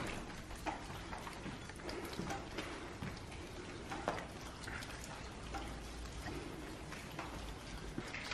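Faint, irregular patter of dripping water, with light ticks scattered through it.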